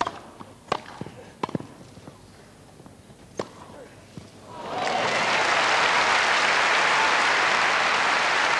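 A few sharp strikes of a tennis ball on rackets: a serve, a return and a volley, the last about three and a half seconds in. The crowd then breaks into applause about four and a half seconds in, and the applause holds steady, louder than the strikes.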